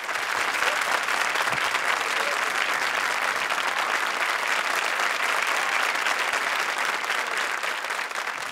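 Studio audience applauding steadily, a dense sustained clapping that eases slightly near the end.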